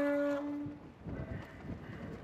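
A car ferry's horn sounds one steady, single-pitched blast that cuts off about a second in. After it there is only faint wind noise.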